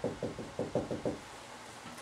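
Whiteboard marker writing a word on a wall-mounted whiteboard, its strokes tapping against the board: a quick run of about eight short, dull knocks in the first second or so.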